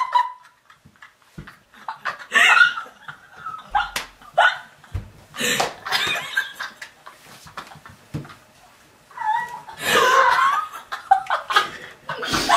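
Two girls laughing hard in bursts with short pauses, the loudest bout near the end, with a few short thumps in between.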